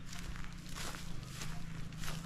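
Footsteps on dry grass and loose stones: three or four steps about half a second apart.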